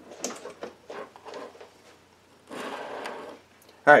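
A string of small plastic clicks and knocks as a power plug is pushed into a small electronics box and cables are handled, followed about a second later by a short rustling hiss.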